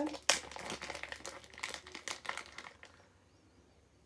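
Small clear plastic zip-top bag crinkling as it is opened and handled. There is a sharp click about a quarter of a second in, and the rustling fades out after about two and a half seconds.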